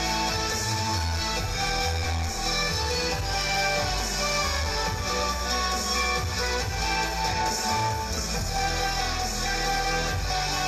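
Music playing steadily, with guitar.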